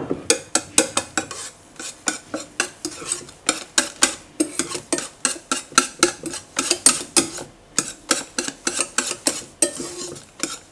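A whisk and then a spatula stirring thick soufflé batter, scraping and clicking against an enamel bowl in quick, even strokes of about four a second.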